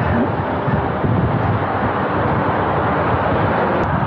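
Steady rush of wind over the camera microphone on a road bike moving at about 30 km/h, with the road bike's tyre and road noise underneath.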